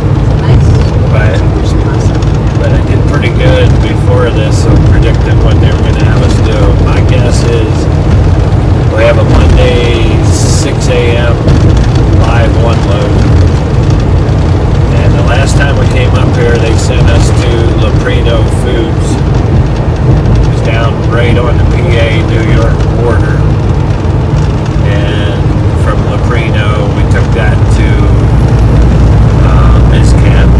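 Steady low drone of a semi truck's engine and road noise heard from inside the cab at highway speed, with voices talking over it.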